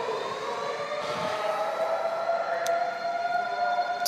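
Emergency vehicle siren winding up in pitch over the first second or so, then holding a steady wail.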